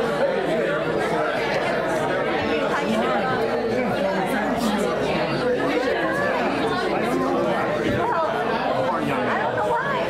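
Congregation chatter: many people talking at once in overlapping conversations, a steady hubbub of voices filling a large room.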